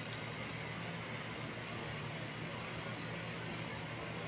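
A single crisp crunch as a deep-fried mini chimichanga is bitten into, just after the start, followed by a steady low hiss of room noise.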